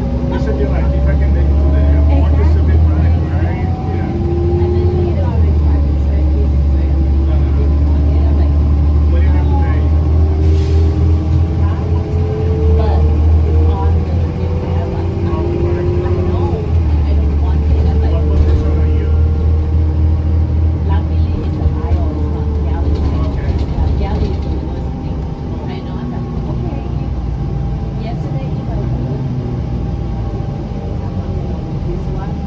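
Inside a 2007 New Flyer C40LF bus with a Cummins C Gas natural-gas engine on the move: a deep engine drone with a whine that climbs in pitch, drops back and climbs again several times as the bus pulls through its gears. It is somewhat quieter near the end.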